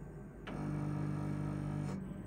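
NTI Series II condensing gas boiler restarting after a cascade settings change: a steady low-pitched hum starts about half a second in and cuts off after about a second and a half.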